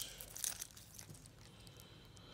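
Faint handling sounds of a stainless steel watch in its plastic protective film being turned over in the hand: a light crinkle and small clicks about half a second in, then only soft rustling.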